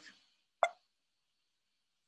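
A single short click about half a second in; otherwise near silence.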